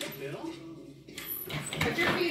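Quiet talking with a few soft knocks and rustles.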